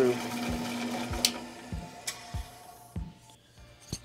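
Belt-driven bench drill press motor running, then winding down to a stop after being switched off, with a sharp click about a second in. A regular low thump from the spinning drive slows as it coasts down.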